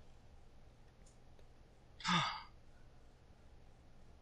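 A person sighing once, a short breath out about two seconds in, over a faint steady low hum.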